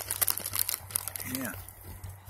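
Crinkling and crunching close to the microphone as small goats go after in-shell peanuts: a quick run of crackles in the first second that thins out.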